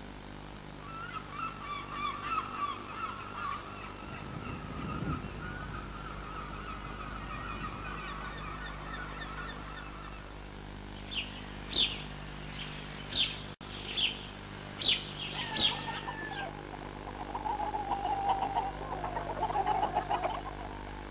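Birds calling: a long run of wavering calls in the first half, then a series of short, high chirps, then more wavering calls near the end, over a faint steady hum.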